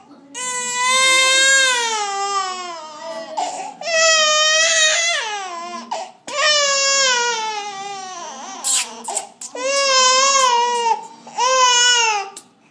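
Baby crying: about five long wails in a row with short breaths between, each one sliding down in pitch as it ends.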